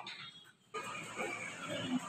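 Faint room tone with soft indistinct background noise, after a short dead-silent gap about half a second in where one clip is cut to the next.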